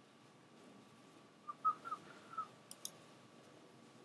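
A person softly whistles a few short notes, then a computer mouse clicks twice in quick succession.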